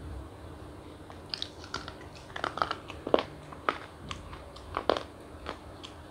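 Crunchy chocolate being bitten and chewed: a run of crisp crunches starting about a second in, the loudest around three and five seconds in.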